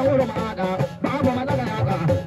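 A man singing into a microphone, amplified through a loudspeaker, over a steady beat of drums struck with curved sticks.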